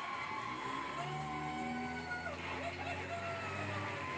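Television sound heard through the set's speaker in the room: voices from the studio, over a low steady hum that sets in about half a second in.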